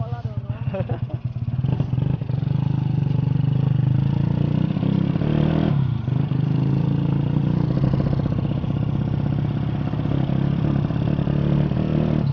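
Honda Astrea Grand underbone motorcycle's small single-cylinder four-stroke engine on the move. It beats at low revs for the first two seconds, then runs steadily at higher speed, with a brief dip about six seconds in.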